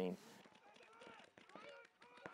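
Faint distant shouting voices carrying across an open field, with a few sharp clicks scattered among them.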